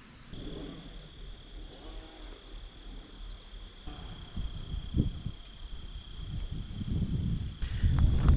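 Steady chorus of insects trilling without a break at two high pitches, over a low rumble that builds toward the end.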